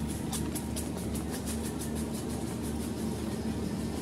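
A steady low rumbling hum with a faint steady tone, and over it a fast, even run of thin high ticks, about six a second, dying away after about three seconds.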